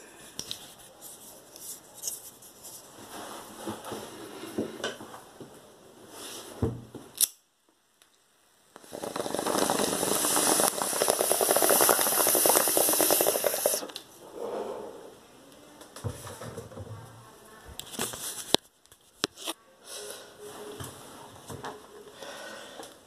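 Someone drawing on a homemade bottle bong: a loud rushing hiss with a rapid fine crackle, lasting about five seconds from roughly nine seconds in. Faint scattered knocks and handling noises come before and after it.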